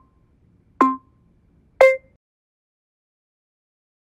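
Workout interval-timer countdown beeps, one a second: a short beep about a second in, then a final beep of a different pitch about two seconds in that marks the end of the set.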